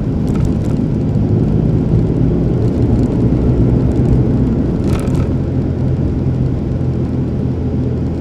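Car interior noise while driving: a steady low rumble of engine and tyres on the road. A short click or rattle about five seconds in.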